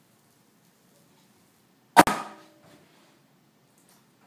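Wooden multi-wire soap loaf cutter closing: one sharp wooden clack about halfway through as the hinged frame comes down onto its base, with a short ringing after it.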